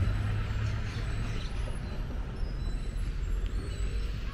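Street ambience with a steady low rumble of road traffic.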